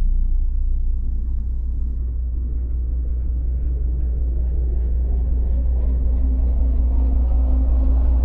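A loud, steady deep rumble from a cinematic sci-fi soundtrack, with sustained higher tones swelling in over the last few seconds as it builds.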